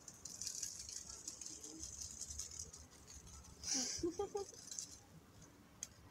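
Soft rustling from a hand stroking a pet's fur, with a short burst of vocal sound about four seconds in.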